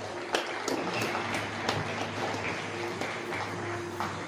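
Scattered applause from a small crowd, with distinct claps about three a second in the first two seconds, over quiet background music.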